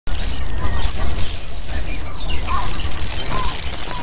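Birdsong over a nature-ambience bed: a quick run of about eight high chirps, then one longer high whistle, with a steady low rumble underneath.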